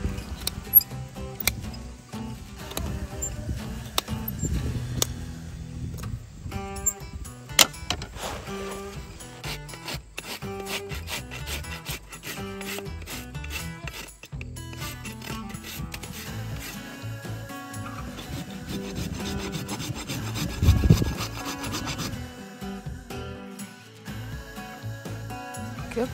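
Hoof nippers snapping through a horse's overgrown hoof wall with a couple of sharp cracks, then a steel hoof rasp filing the hoof in long runs of repeated scraping strokes as the hoof is trimmed.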